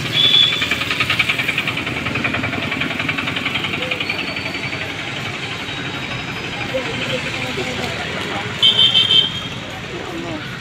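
Road traffic with vehicle horns beeping: one short beep at the start and a quick burst of several beeps near the end, over steady engine and street noise.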